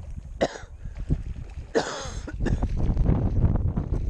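Strong wind buffeting the microphone as a steady low rumble, broken by a short throaty human sound about two seconds in.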